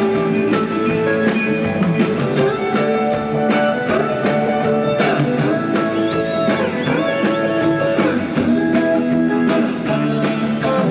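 Live rock and roll band playing, led by an electric guitar solo over drums, with bent notes in the middle.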